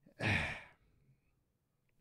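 A man's short, breathy sigh, about half a second long.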